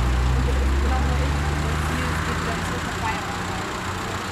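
A stopped car's engine idling, a steady low hum, with quiet voices over it.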